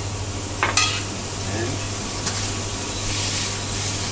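Courgette ribbons sizzling in hot olive oil in a frying pan as they are turned with metal tongs, a quick sauté. There is a sharp clink of the tongs on the pan just under a second in and a lighter one about two seconds later.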